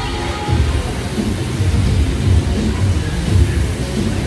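Assault air bike's fan whooshing under hard pedalling, a low rumble that surges with each stroke, with background music.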